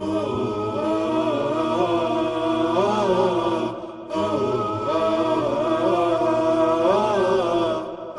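Unaccompanied vocal chant in the style of an Islamic nasheed, sung in two long, melismatic phrases with a brief break about halfway through.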